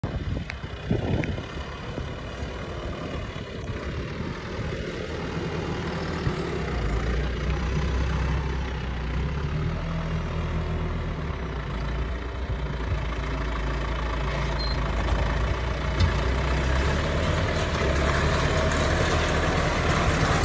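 John Deere tractor's diesel engine running steadily as it pulls a seed drill across tilled soil. The sound grows gradually louder as the tractor draws near.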